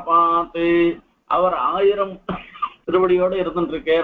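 Only speech: a man giving a religious discourse in Tamil, in short phrases with brief pauses.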